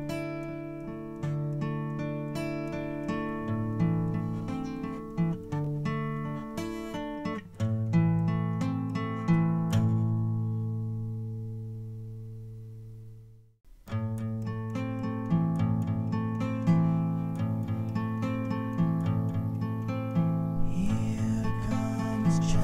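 Acoustic guitar music: plucked notes over a bass line. About halfway through, a held chord dies away to a brief silence, then the playing starts again.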